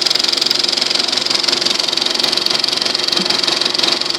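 Film projector mechanism running: a rapid, even, steady clatter from the film transport and sprockets as film runs through the projector.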